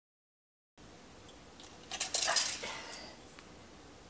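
Silence, then after a cut a brief metallic rattle and clicks about two seconds in as a steel tape measure is handled at the baseboard, over faint room tone.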